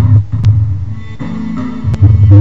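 Low sustained notes from Edirol HQ Orchestral software instrument samples, starting abruptly and growing softer about a second in before swelling again near the end. Two short clicks sound over the notes.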